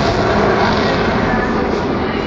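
Avro Vulcan bomber's four Rolls-Royce Olympus turbojets in flight: loud, steady jet engine noise, easing slightly toward the end.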